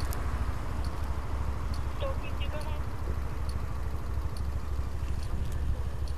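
Motor scooter's engine idling steadily, with a faint regular tick a little more than once a second.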